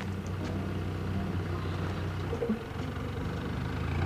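Car engine idling steadily, with a short knock about two and a half seconds in.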